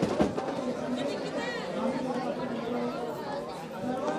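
Crowd chatter: many people talking at once, with a couple of drum beats at the very start.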